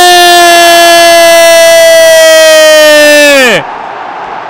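A football commentator's long, held goal shout: one loud sustained note of about three and a half seconds that sags slightly and then drops away sharply. Stadium crowd noise continues underneath.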